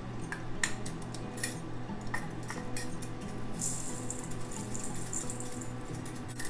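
Light clicks and knocks of a glass jar and its lid being handled and opened. From about three and a half seconds in, rolled oats are poured from the jar into a stainless steel bowl, giving a dry hissing rattle for about two seconds.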